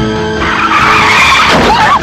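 Car tyres skidding on a road, a loud screech starting about half a second in, over music. Near the end a high, wavering scream cuts in.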